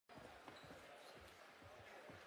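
Near silence: faint room noise with a few soft, irregular low thumps.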